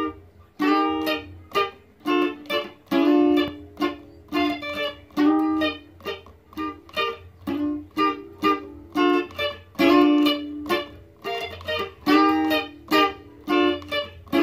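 Electric guitar, a sunburst Stratocaster-style, picked in a steady highlife rhythm of short notes and chords, two to three attacks a second, with a steady low hum underneath.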